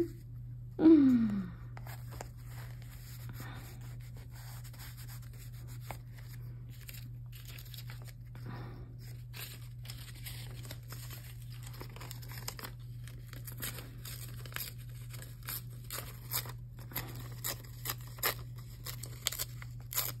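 Paper being torn by hand and handled: short ripping and crinkling sounds from a strip of book page, coming more often in the second half. A short laugh and a falling hum from a woman at the start, over a steady low hum.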